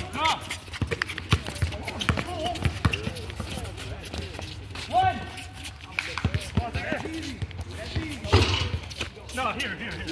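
Basketball bouncing on an outdoor hard court, with many short thuds throughout, mixed with running footsteps and players' brief shouts.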